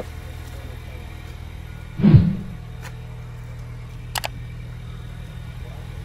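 A steady low hum with a single dull thump about two seconds in.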